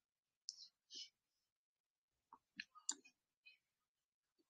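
Near silence broken by a few faint, irregular clicks, the loudest about three seconds in.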